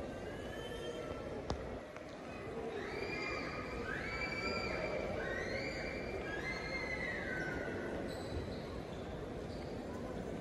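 Hum of a large terminal hall, with a sharp click about a second and a half in. Then a run of four high-pitched squeals, each about a second long, rising, holding and falling away.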